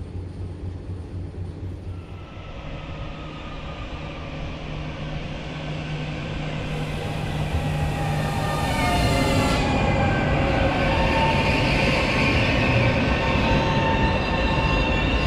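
A train coming through the station, growing steadily louder, with a low steady drone. In the second half several high metallic squealing tones join it, the squeal of steel wheels and brakes on the rails.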